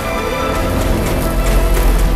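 Film score of sustained pipe-organ chords over a deep low rumble that swells toward the end, with water splashing underneath.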